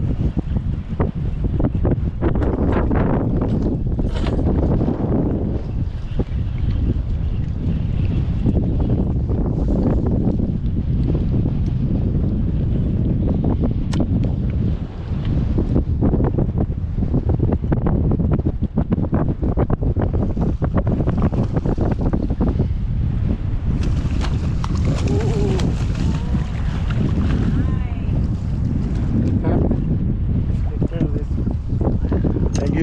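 Wind buffeting the action-camera microphone over choppy open water, a steady low rumble with crackling gusts, with water lapping around the boat. From a few seconds before the end, hissing water splashes join in as a hooked redfish is brought to the net.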